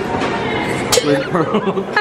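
Voices and chuckling, with one sharp click about halfway through.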